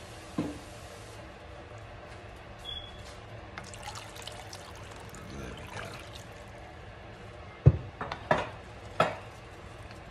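Liquid being poured into a pot of stew, with a few sharp knocks near the end, the first of them the loudest.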